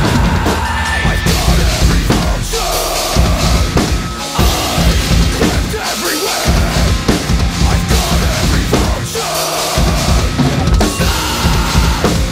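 Spaun drum kit with Scymtek cymbals played hard along to a recorded metalcore song: kick drum, snare and cymbal strikes in a driving rhythm, the low kick drum dropping out briefly a few times.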